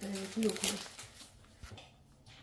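A person speaks briefly, then quiet room tone with a single faint click.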